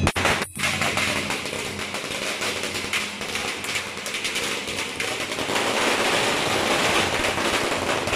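A string of firecrackers going off in a rapid, continuous crackle that starts about half a second in.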